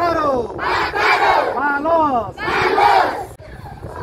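A large group of schoolchildren shouting together in unison, in three or four loud calls that each fall in pitch. The shouting drops off near the end.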